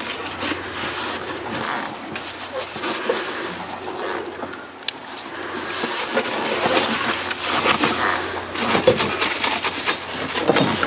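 A paper towel rubbing and wiping over fiberglass and a metal base plate, cleaning it with isopropyl alcohol, along with hand and bottle handling noises. The scratchy rubbing is uneven and gets louder in the second half.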